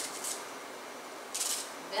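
Kitchen knife slicing through an onion held in the hand, two short crisp cuts about a second and a half apart.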